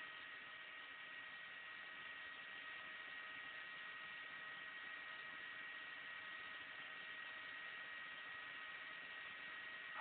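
Faint steady hiss with a thin, steady high-pitched whine from a VHF FM radio receiver tuned to the ISS downlink on 145.800 MHz. It is the dead air between the space station's transmissions, while the astronaut listens to a ground station on the split uplink frequency.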